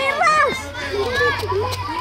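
Children's voices chattering and calling out at play, several voices overlapping.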